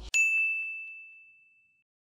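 A single high, bell-like ding from an editing sound effect, struck just after the start and ringing away to nothing over about a second and a half.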